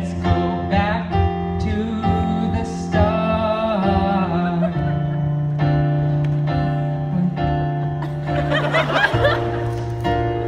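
A small band playing a song live: acoustic guitar and keyboard under sustained notes, with male voices singing the melody through microphones.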